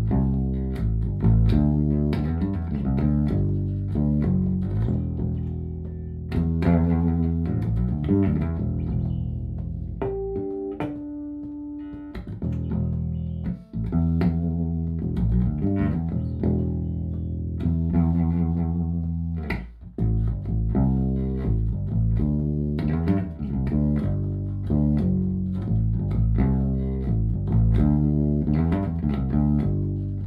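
Sandberg California 25th Anniversary electric bass with Häussel Tronbucker pickups, played through a Fender Bassman TV15 combo and a Tech 21 VT Bass pedal: a line of plucked bass notes, with a held higher note around ten to twelve seconds in and brief breaks near fourteen and twenty seconds.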